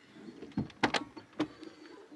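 Rear hinged doors of a Mercedes Sprinter van being opened: a few sharp metallic clicks and knocks from the door latch and hinges, spread over about a second.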